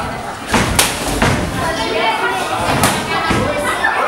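Several sharp thuds from the kickboxing bout in the ring, the strongest close together in the first second and a half and another near three seconds, over people's voices calling out.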